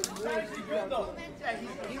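Speech only: several people talking and chattering over one another.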